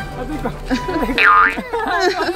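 Comic sound effect added in editing: a quick whistle-like tone that dips in pitch and swoops back up, about a second in, over background music.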